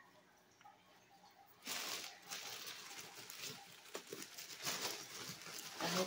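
Plastic mailer bag rustling and crinkling as it is handled, in uneven bursts starting about two seconds in after a quiet start.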